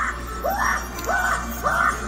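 Spirit Halloween Lucky Bottoms animatronic clown laughing through its speaker in a high, cackling voice: a string of rising laugh syllables about every half second. The prop is on a constant cycle of crazy laughter.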